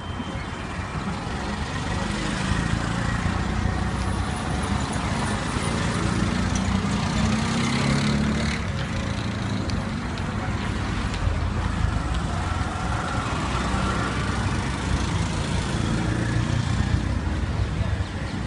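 Street traffic: auto-rickshaw and car engines running as they drive past, a steady mix of engine hum and road noise.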